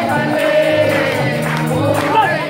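Gospel worship song with a group of voices singing over instrumental backing, holding long notes.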